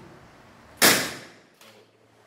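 A single loud bang about a second in, fading over half a second: a short circuit arcing at a lamp point as the breaker is switched on into the faulted wiring, which trips the breaker.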